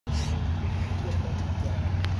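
Steady low rumble of a fire engine's diesel engine idling close by, with faint voices in the background.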